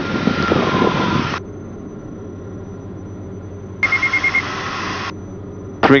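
The twin Austro AE300 diesel engines of a Diamond DA42-VI droning steadily in the cabin. Twice a burst of hiss from the radio or intercom opens and cuts off suddenly, the second carrying a quick run of about six high beeps.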